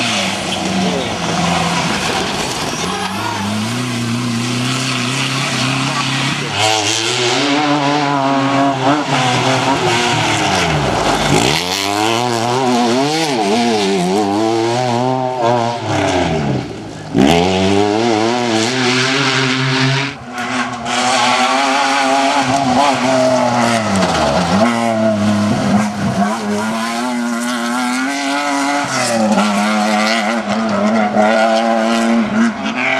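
Cross-country rally 4x4 engines driven hard on dirt tracks, revving up and down through gear changes. Twice a car passes close and its note sweeps down and back up. There are a few sharp knocks midway.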